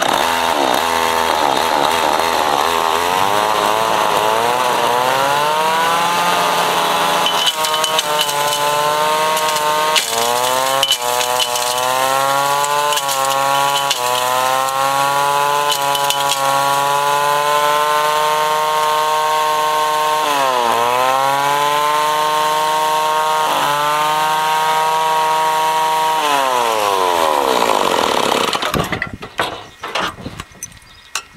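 A two-stroke chainsaw engine drives a portable ore sample mill that is grinding rock. The engine runs at high revs, its pitch climbing and sagging again and again, with two sharp dips about two-thirds of the way through. It winds down and stops near the end.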